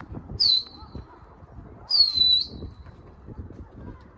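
Two loud, high-pitched human whistles, each dropping slightly in pitch and then held, the second longer: a pigeon keeper whistling to his flock in flight.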